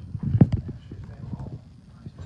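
A few dull knocks or bumps in the first second, the loudest about half a second in, then fainter scattered rustling.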